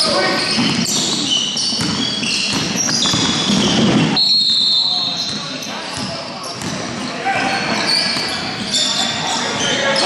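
Indoor basketball game: a ball bouncing on the court, many short high sneaker squeaks, and players calling out, echoing in a large hall.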